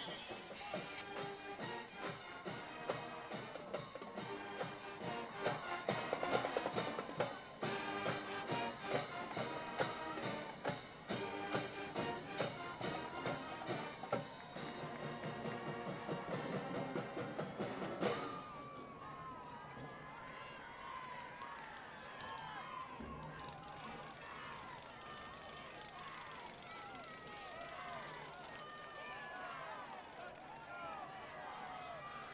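Music with a steady beat that cuts off about 18 seconds in, followed by a murmur of many voices from the crowd.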